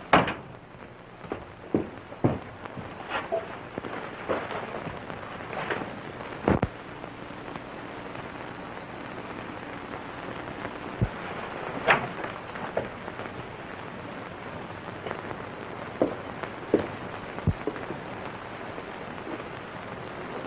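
Steady hiss of a worn 1931 optical film soundtrack, crackling, with scattered clicks and pops.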